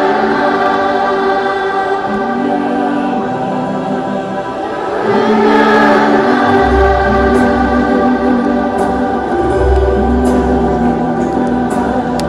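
Massed children's choir singing long held notes over an instrumental backing, with a deep bass line coming in about six and a half seconds in.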